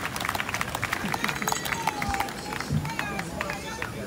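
A crowd applauding with scattered hand claps that thin out about halfway through, with voices talking over them.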